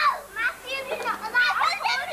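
Young children's high-pitched voices calling out and chattering over one another as they play, with no clear words.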